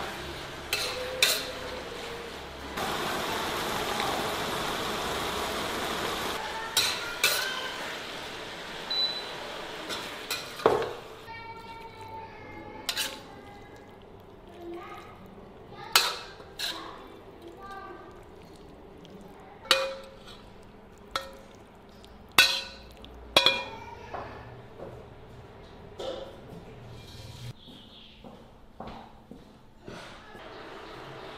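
A metal spatula stirring and scraping pork belly and dried cabbage in a wok over a steady frying sizzle, loudest a few seconds in, then a quieter stretch with a dozen or so sharp metallic clinks.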